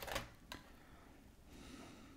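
Faint handling sounds of a laptop hard drive in its caddy being slid out of an IBM ThinkPad R40's drive bay: a few light clicks and scrapes in the first half second, then a soft rustle of the drive being handled near the end.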